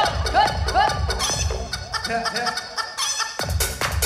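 An electronic dance track with a steady beat and a repeated chicken-like clucking sound over it. About two seconds in the beat drops out briefly, leaving stepped synth tones, and the full beat comes back in near the end.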